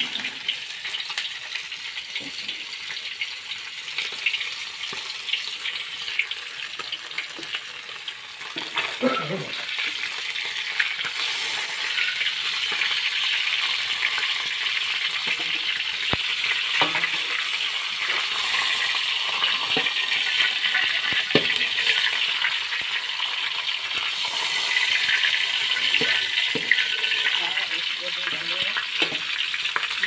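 Whole fish frying in hot oil in a metal wok: a steady sizzle that grows louder about nine seconds in. A metal spatula taps and scrapes against the wok a few times as the fish is turned.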